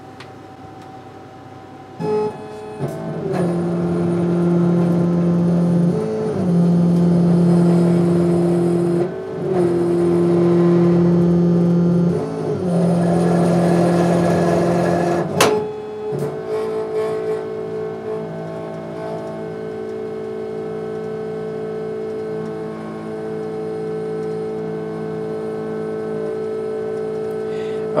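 A 40 W CO2 laser cutter running a cut in 3 mm acrylic, its machine whining in steady tones. The tones hold for a few seconds at a time, then break and shift pitch, with one sharp click partway through. The job is set for 4 mm stock, so the cut runs slower than the material needs.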